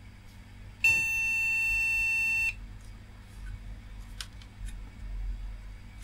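Motherboard's BIOS beeper sounding one long, steady, high-pitched beep of about a second and a half, starting about a second in. It is the repeating memory-error beep of a board that does not detect its RAM.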